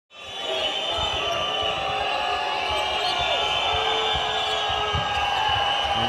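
A basketball being dribbled on a hardwood court, a run of short low thuds, over the steady noise of a crowd in an indoor arena.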